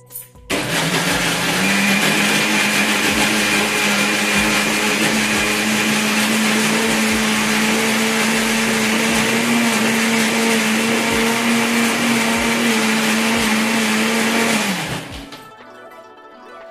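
Electric mixer grinder with a steel jar running, held shut by hand: the motor starts about half a second in, climbs to full speed within a second or so, runs steadily, and winds down shortly before the end.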